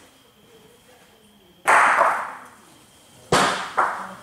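Bocce balls knocking hard on a court: a loud sharp clack about a second and a half in that rings briefly, then two more hard knocks close together near the end, as a thrown ball hits a ball lying by the jack and knocks it away.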